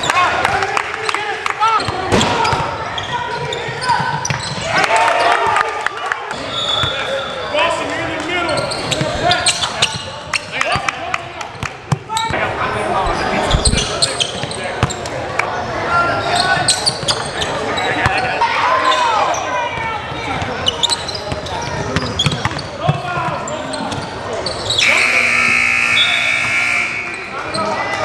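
Live basketball game sound in a large gym: the ball dribbling and bouncing on the hardwood court, sharp impacts, and indistinct shouting from players and people courtside. Near the end comes about two seconds of a steady buzzing tone.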